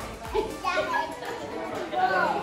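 Babies and toddlers vocalizing with high-pitched voices as they play, over background music.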